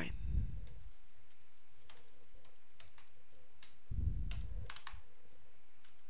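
Scattered keystrokes on a computer keyboard, a few separate clicks spread over several seconds. A low muffled sound comes in briefly about four seconds in.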